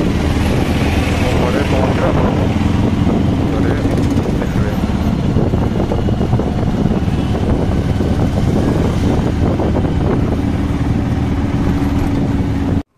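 Auto-rickshaw engine running steadily as it drives through traffic, heard from inside the open passenger cabin with road noise.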